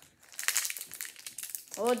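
A foil trading-card booster pack wrapper crinkling as it is handled in the hands, a run of crackles lasting about a second, followed by a child's voice near the end.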